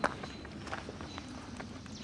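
Footsteps on a dirt woodland trail, a step about every half second, the first one the loudest.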